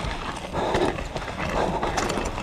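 Mountain bike riding fast down a rough gravel trail: tyres crunching over loose stones, with the bike rattling and clattering over the bumps and wind rumbling on the camera microphone.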